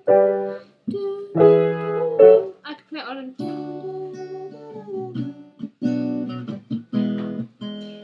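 Acoustic guitar strummed in a handful of separate chords that ring out, with short gaps between them.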